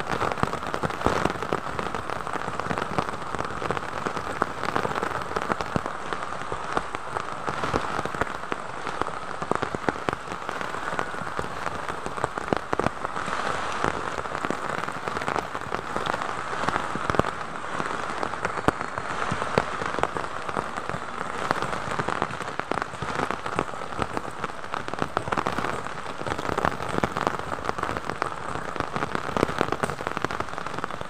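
Heavy rain falling steadily on foliage, with many sharp drop taps.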